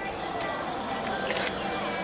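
Steady, moderate outdoor background noise with no distinct events.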